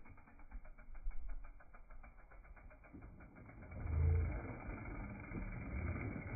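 Mountain bike coasting over a dirt jump and trail: a rapid ticking through the first half, then a low rumble of knobby tyres on dirt that swells about four seconds in as the bike passes close.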